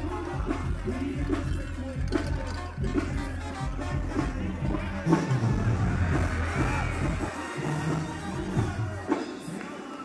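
Banda music playing, with crowd noise beneath it; the deep bass notes drop away about seven seconds in.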